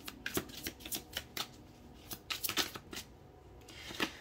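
A tarot deck being shuffled by hand: a run of soft, irregular card flicks in two bunches, the second about two seconds in.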